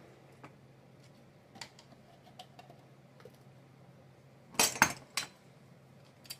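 Light kitchen handling on a countertop: faint ticks, then a quick cluster of sharp clicks and clinks about four and a half seconds in as a skewered mango is set into a clear cup and a hand lime squeezer is picked up, over a low steady hum.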